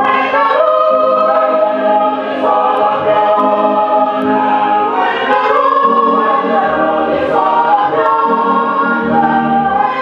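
A congregation of mostly women's voices singing a hymn together in unison, holding long notes that move slowly from one to the next.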